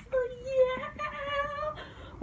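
A woman's drawn-out, high-pitched wordless exclamation of delight, held for most of two seconds and wavering slightly in pitch, with a few faint clicks under it.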